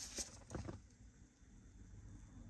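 Faint handling noises: a few light knocks and rustles in the first second as the old airbag control module is picked up in a gloved hand, then quiet.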